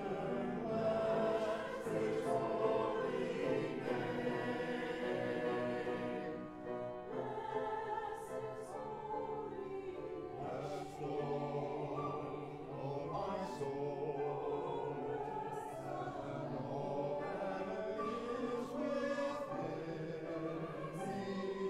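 A mixed choir of men's and women's voices singing together.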